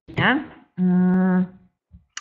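A woman's voice makes a short gliding vocal sound, then holds a steady hum on one pitch for just under a second.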